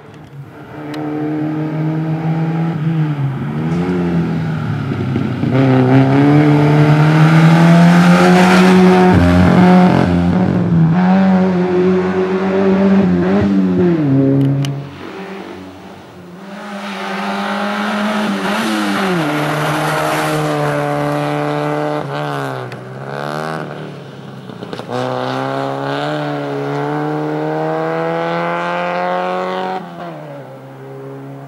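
A slalom race car's engine revving hard, its pitch repeatedly climbing and falling as the driver accelerates, brakes and shifts between the cone chicanes. It is loudest as the car passes close, dips briefly about halfway, then rises again.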